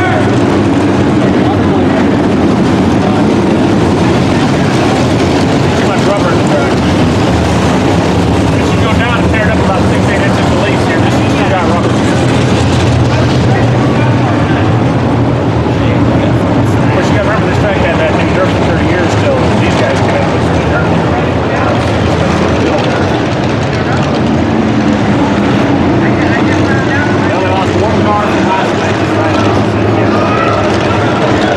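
Several modified dirt-track race cars' V8 engines running together in a steady drone as the field circles the oval at an even pace, with no hard revving.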